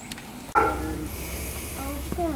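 Faint background voices over a low steady rumble. They start abruptly about half a second in, after a short quiet stretch.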